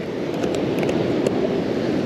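Steady rushing of ocean surf with wind on the beach, swelling slightly over the two seconds.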